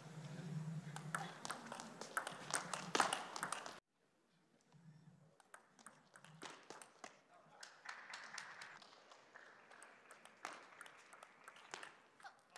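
Crowd applause in an arena that cuts off abruptly about four seconds in. Then a table tennis ball ticks sharply off the rackets and the table during a rally, with scattered crowd reaction.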